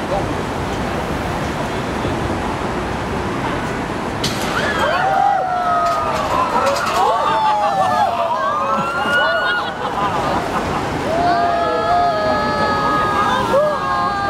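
Riders on the GX-5 Extreme Swing screaming as the gondola falls and swings. Several high, wavering screams start about four seconds in and turn into long held screams near the end, over a steady background noise.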